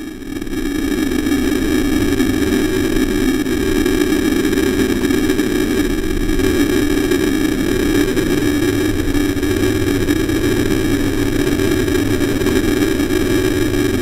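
Loud, steady electronic static with a buzzing hum running under it, swelling up in the first second and then holding level.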